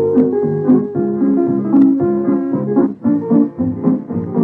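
Instrumental break between verses of a country song: a small band with a picked guitar lead and no singing, on an old radio transcription recording.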